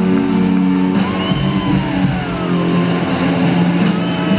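Live rock band playing loud electric guitars in an arena, with long held notes ringing through the hall.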